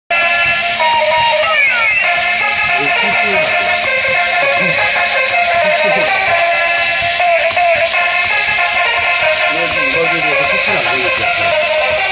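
Electronic melody music from a walking, dancing toy crocodile's built-in sound unit, loud and steady, with a pair of crossing rising and falling sweeps about a second and a half in.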